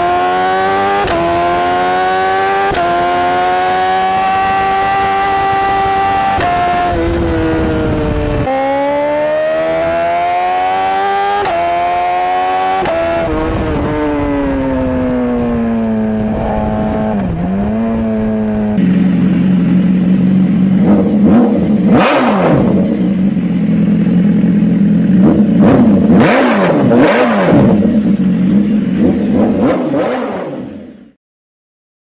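Motorcycle engine sound effects from the Dream Machine Bike Engine, a battery-operated bicycle sound unit. For the first twenty seconds or so the engine revs up and falls back again and again, with pitch steps like gear changes. Then it changes to a lower, louder idle, with a sharp throttle blip about two-thirds of the way in and two more near the end.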